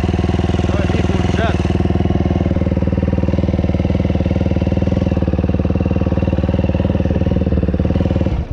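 KTM enduro dirt bike engine idling steadily, with an even, unchanging pulse and no revving.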